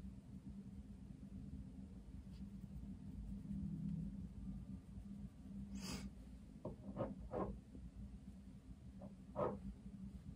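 Quiet room with a low steady hum, broken by a short breathy rush about six seconds in and a few faint soft handling sounds of makeup tools after it.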